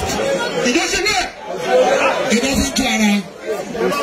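A man speaking through a microphone to a crowd, with faint background music.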